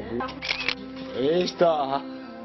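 A person speaking in Italian, over steady background music.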